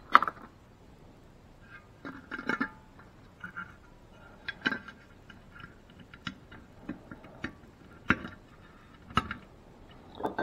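Light clicking and rustling of hands fitting an H4 halogen bulb into the metal bulb mount of a glass headlight housing, with a few sharper metallic clicks after the middle as the bulb and its retaining clip are seated.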